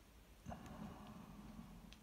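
Faint rustle of a hand and mechanical pencil coming down onto drawing paper, starting suddenly about half a second in and running on for over a second, with a small tick of the pencil near the end.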